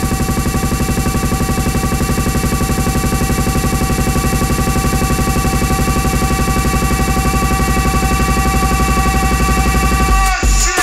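Buzzing electronic drone with many held tones and a fast, even pulse, playing as the intro of a jungle record. It cuts off at the end as the drum and bass beat comes in.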